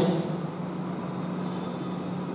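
Steady low hum under an even hiss: the room's background noise, with no speech.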